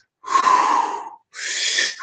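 A man taking deep, audible breaths close to the microphone: one long breath ending about a second in, then another drawn right after. These are slow, deep relaxation breaths.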